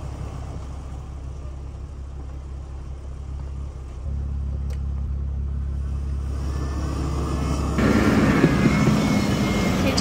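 Jeep Wrangler's engine running at low revs as it crawls over a rock ledge. It is a steady low drone that gets louder about four seconds in, then becomes suddenly louder and closer for the last two seconds.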